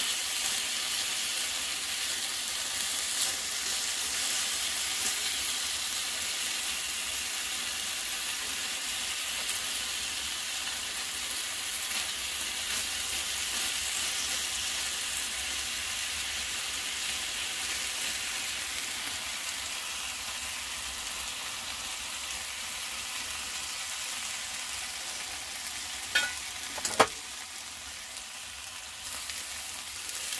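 Pork medallions and apple pieces frying in sweet chilli sauce in a pan on a portable gas stove: a steady sizzle that eases slightly toward the end. Two sharp knocks come near the end.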